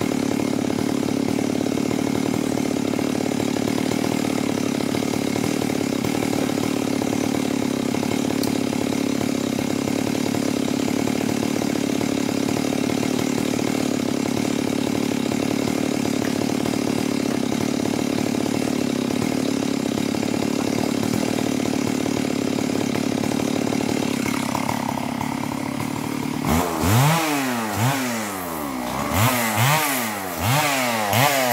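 Two-stroke chainsaw running at a steady speed for most of the time. Near the end it is revved up and down several times in quick succession.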